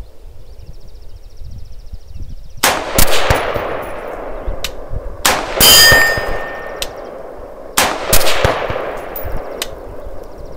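AR-15-style rifle firing a string of shots at uneven spacing, starting about two and a half seconds in, each shot echoing; brief metallic ringing from steel targets being hit.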